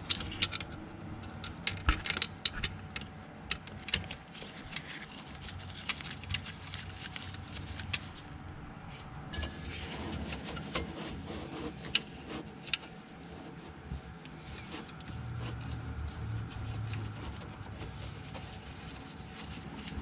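A screwdriver loosening a hose clamp on the power steering return hose of a 1967 Mustang, then the rubber hose being worked by hand: a run of small metallic clicks and clinks, thickest in the first few seconds, with rubbing and scraping.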